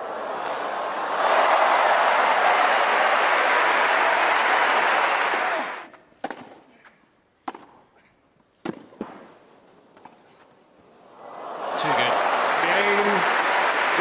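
Tennis crowd applauding and cheering, cut off suddenly about six seconds in. Then a quiet court with several sharp racket-on-ball hits about a second apart during a rally. Applause and cheering rise again near the end as the point is won.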